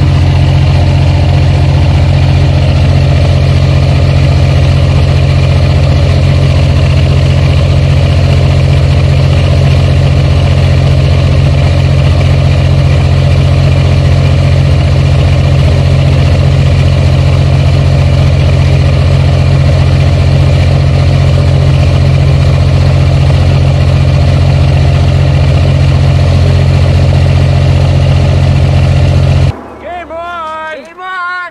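Heavy diesel truck engine idling steadily, loud and unchanging, with a strong low hum; it cuts off abruptly near the end.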